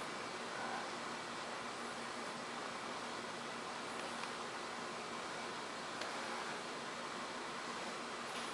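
Steady faint hiss of room tone, with a few soft clicks from a laptop touchpad at the start, a little after four seconds and again at six seconds.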